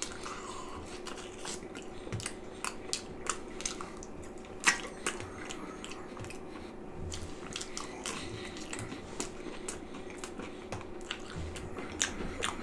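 A person chewing a mouthful of cheese pizza topped with pork and beans: irregular wet mouth clicks and smacks, over a steady faint hum.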